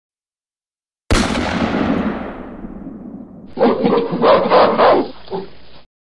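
Title-card sound effects. About a second in comes a sudden loud blast that dies away over about two seconds. Then, from about halfway through, a rough animal-like call in several pulses lasts a couple of seconds and stops abruptly.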